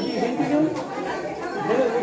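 Several people talking at once: overlapping conversation from a crowd in a corridor.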